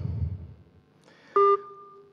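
An electronic beep about one and a half seconds in: a steady two-pitch tone, loud for a moment and then holding on more quietly. A faint low hum dies away before it.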